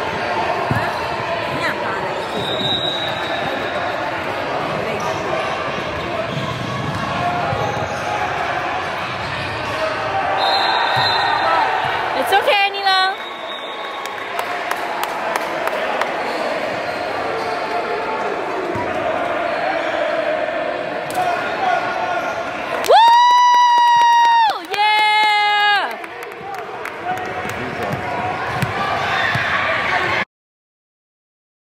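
Basketball bouncing on a hardwood gym floor amid echoing chatter from players and spectators. There is a brief warbling high tone about halfway through, and near the end two long, loud high tones in a row.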